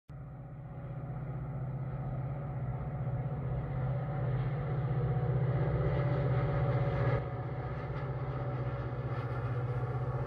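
Steady mechanical rumble of a passing vehicle, growing louder over the first few seconds and easing slightly about seven seconds in.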